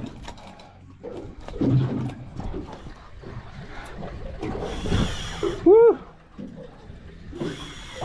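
Knocks and rustles of a fish being handled and unhooked on a boat deck, with bursts of hiss. About six seconds in comes a short, loud voiced call from a person, rising and then falling in pitch.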